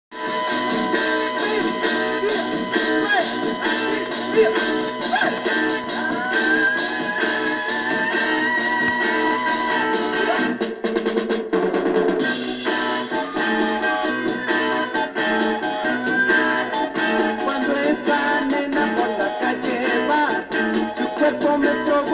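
Instrumental intro of a Mexican garage-rock record played from a 45 rpm vinyl single on a turntable: electric guitar and drums.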